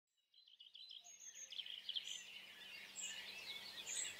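Faint birdsong: several birds chirping in short, quick calls, starting about half a second in.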